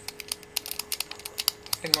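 A knife paring the brown skin off a hand-held piece of hard white food, making a rapid, uneven run of small sharp clicks and scrapes.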